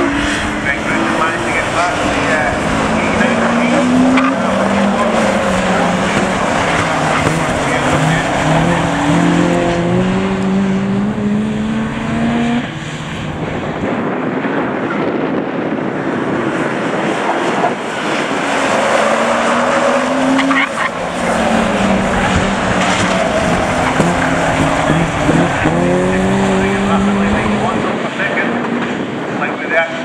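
Engines of a pack of road-going saloon race cars, repeatedly revving up in pitch as they accelerate down the straight and dropping back as they lift off for the turns.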